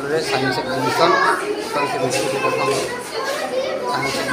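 Many children's voices talking and calling at once in a large hall: a continuous, echoing hubbub with no single voice standing out.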